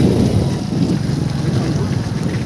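Wind blowing across the microphone: a loud, low, uneven rumble.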